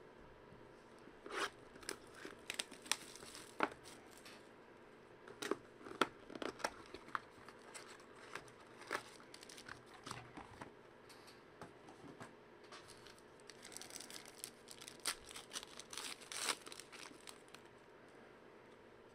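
Quiet handling of trading cards and plastic card holders on a table, with scattered light clicks and taps, then a thicker run of crinkling near the end as a foil card pack wrapper is torn open.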